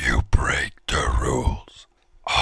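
Speech only: a voice speaking in short phrases, with brief pauses between them.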